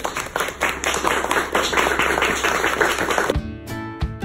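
A small audience clapping and applauding in a dense, steady patter. A little over three seconds in it cuts off abruptly to acoustic guitar music.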